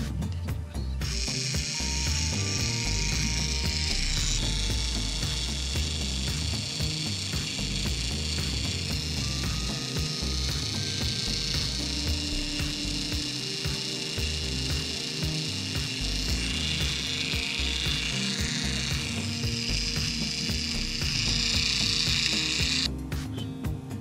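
Hobby servo motor driving a 3D-printed plastic reduction gearbox: a steady whirring with gear chatter that starts about a second in, shifts in pitch a few times, and stops abruptly near the end. Background music plays underneath.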